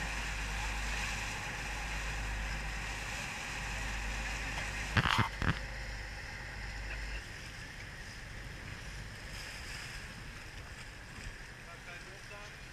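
Rescue boat engines running alongside a sailing ship over wind and water noise, with two or three sharp knocks about five seconds in. The low engine rumble fades after about seven seconds as the boats separate.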